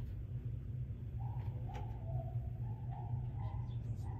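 A bird calling in a series of short, clear notes that step up and down in pitch, starting about a second in, over a steady low hum.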